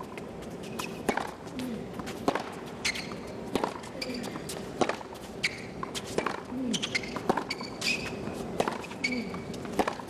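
Tennis rally on a hard court: sharp racquet strikes and ball bounces, one every half-second to second, with tennis shoes squeaking on the court surface in between.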